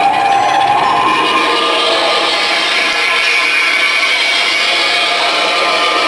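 Loud, dense wash of distorted sound from a live rock band's amplifiers, with a few faint sustained tones and no clear beat.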